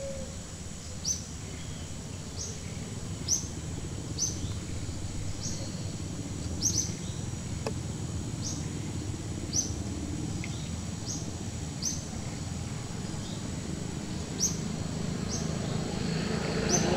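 A short, high chirp repeated at a steady pace of roughly one a second, over a steady low outdoor background.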